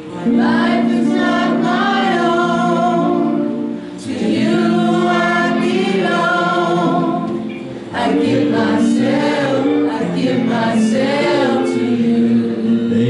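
Gospel singing by a small group of voices on microphones over a steady instrumental accompaniment, in three phrases of about four seconds each with short breaths between them.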